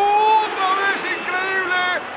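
Sports commentator's excited shout: one long drawn-out note that rises slightly and ends about half a second in, then a quick run of high-pitched exclamations, reacting to a shot that strikes the post.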